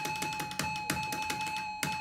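Slot machine's electronic tone held steady while credits are loaded onto the bets, with quick clicks over it, about six or seven a second.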